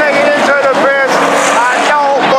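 Several IMCA Hobby Stock cars' V8 engines at high revs, racing past on a dirt oval, their pitch dipping and rising in quick swoops as the drivers lift off and get back on the throttle through the turn.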